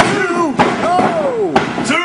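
A referee's hand slapping the wrestling ring mat for a pin count: a few sharp thuds, the loudest at the start, under long drawn-out voice exclamations.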